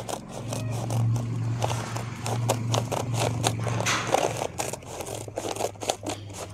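Scissors cutting through a woven plastic rice sack: a run of repeated snips with scraping and crackling of the stiff plastic. A low steady hum sits underneath.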